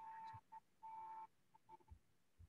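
Near silence on an online call line, with a faint steady high tone that cuts out about half a second in and returns briefly a few times.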